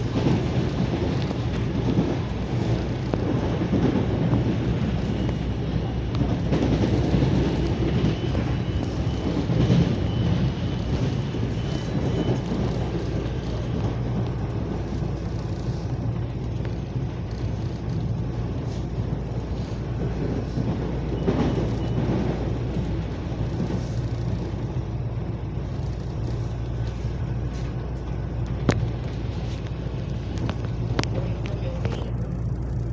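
CPTM Line 11-Coral electric commuter train running along the track, heard from inside the carriage: a steady low rumble of wheels on rail with motor hum. A faint thin whine comes in for a few seconds about a third of the way in, and a few sharp clicks come near the end.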